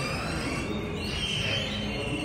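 Analog electronic circuits imitating birdsong: several synthesized whistling chirps that glide up and down in pitch and overlap one another.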